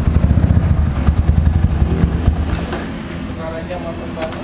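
Supermoto motorcycle engine idling with a steady low pulsing, a little quieter after about three seconds.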